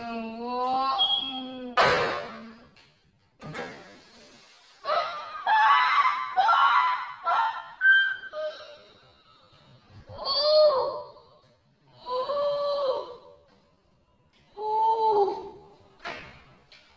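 A plastic water bottle is flipped and lands on a table with a sharp knock about two seconds in. A boy's excited screaming and laughing follows in several loud bursts.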